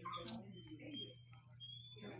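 Dog whining: thin, high-pitched drawn-out whines through most of the moment, over low background talk.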